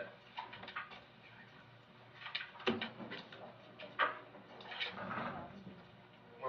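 Quiet courtroom room sound: faint, indistinct voices and two sharp knocks, about two and a half and four seconds in.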